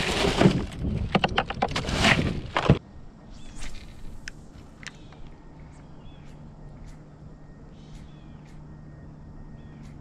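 Close clattering and splashing at the kayak's side as a speckled trout is handled and let go, breaking off abruptly about three seconds in. After that, birds call now and then over a faint low hum.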